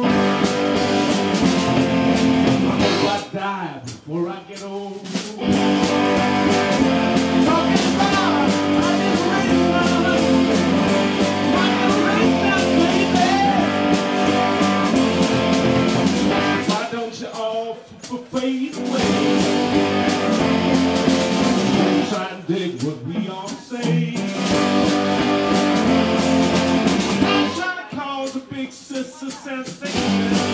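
Live rock band playing: electric guitars over a drum kit. The band stops short three times, a few seconds in and twice in the second half, before coming back in.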